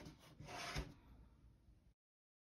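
Faint rubbing and scraping, with a louder bump about three-quarters of a second in; the sound cuts off abruptly just before the end.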